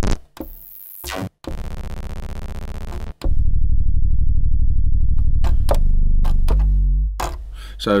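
Software synthesizer bass in an Ableton Live 11 instrument rack, its macros randomized so that the patch keeps changing: a bright noisy sweep, a short break, a buzzy tone, another break, then a loud deep bass with a fast flutter that drops to a lower held note and fades out.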